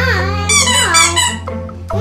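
Background music with a steady bass line, over which come several high squeaks that slide down in pitch, about half a second to one and a half seconds in, from rubber animal squeeze toys.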